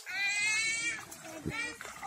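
A high-pitched squeal from a person, a single cry that falls slightly in pitch and lasts just under a second, followed by a few short vocal sounds.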